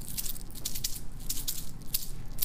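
A pack of small gemstone chips and nuggets being shaken by hand, rattling like a maraca in quick clattering bursts.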